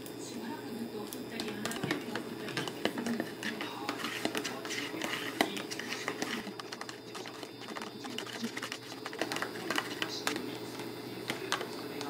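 Metal teaspoon clicking and scraping against a plastic food container while a little liquid is measured into it and stirred, giving irregular sharp clicks throughout.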